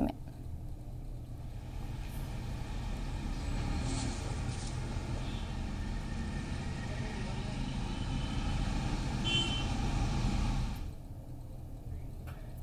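Steady rumble of road traffic and street noise picked up by an outdoor reporter's open microphone over a live link. It cuts off suddenly about eleven seconds in.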